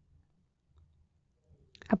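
Near silence with a faint low hum during a pause in the narration, then a voice starts reading near the end.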